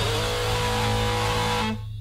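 The last chord of a hardcore punk song, a distorted electric guitar chord left ringing steadily after the band stops. Near the end it drops away, leaving a low hum.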